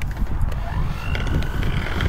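Electric hand mixer switched on: its motor whine rises in pitch about half a second in and then holds steady as the beaters turn in the batter, over a low rumble.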